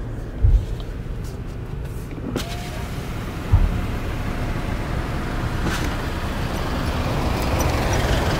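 Car cabin noise as a car rolls slowly onto a ferry's car deck: a steady low rumble with two dull low thumps, about half a second in and about three and a half seconds in, and road and deck noise growing louder near the end.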